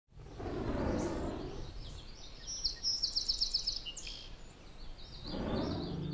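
Outdoor ambience of small birds chirping, with a quick run of about eight high notes around the middle. Two swells of rushing noise come near the start and again near the end.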